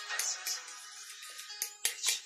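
Background music playing, with the quick, repeated clinking of a fork whisking eggs against a porcelain bowl; the clinks thin out in the middle and pick up again near the end.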